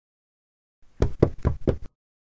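Four quick knocks in a row, about five a second, starting about a second in and over within a second.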